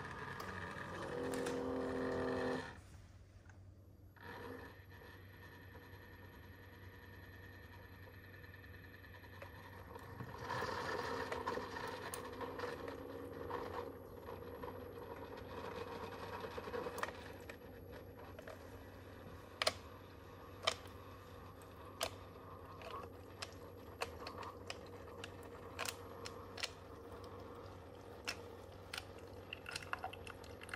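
Keurig K-Duo single-serve coffee maker running a brew-over-ice cycle. It opens with a short pitched hum, then the pump hums steadily under the hiss of water. From about halfway in, coffee trickles into a glass of ice, with scattered sharp clicks and ticks.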